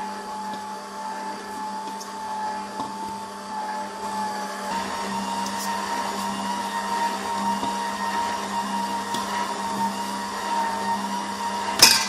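Electric stand mixer running steadily, its motor whining as the flat beater works a soft brioche dough. The whine steps up slightly in pitch about five seconds in, and a sharp click comes near the end.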